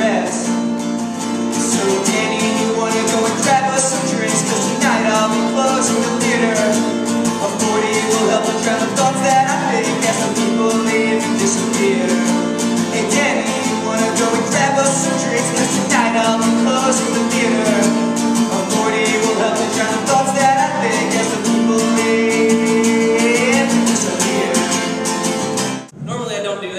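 Acoustic guitar strummed in a repeating chord pattern while a man sings over it; the music cuts off abruptly at the end.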